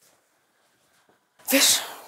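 A sudden loud burst of breath noise with a brief catch of voice, like a sneeze, about one and a half seconds in, fading within half a second.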